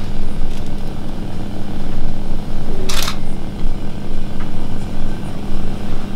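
A camera shutter fires once, a short sharp click about three seconds in, over a steady low room hum.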